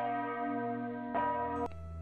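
Large swinging church bell struck twice, about a second apart, each stroke leaving a long ring of overtones. The ringing cuts off abruptly just before the end.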